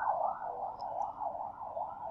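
A siren-like warbling tone in the background, rising and falling in pitch about four times a second.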